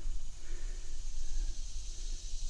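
Outdoor background noise: a steady low rumble with a faint hiss, and no distinct sound event.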